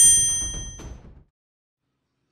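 A single bright, bell-like ding, the time's-up chime at the end of a countdown timer, ringing out and dying away within about a second as the ticking countdown music stops.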